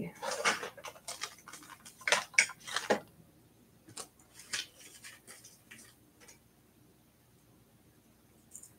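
Small beads and jewelry pieces clicking and clattering against each other and the work table as they are picked through by hand. The clicks come thick at first, then thin out and stop about six seconds in.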